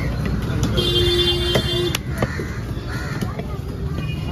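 Steady rumble of street traffic with a single vehicle horn held for about a second, starting about a second in. A few sharp knocks of a knife blade on a wooden chopping block sound through it.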